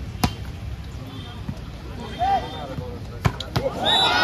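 A volleyball struck hard by hand on a serve about a quarter second in, then two more sharp hits of the ball close together near the end as the rally is played, over low crowd chatter.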